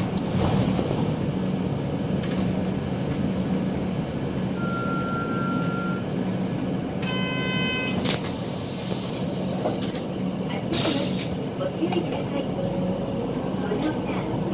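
Inside a city bus on the move: the engine and road noise run as a steady low drone. A short electronic tone sounds about five seconds in and a brief chime about seven seconds in, and there is a short hiss near eleven seconds. A recorded on-board announcement starts near the end.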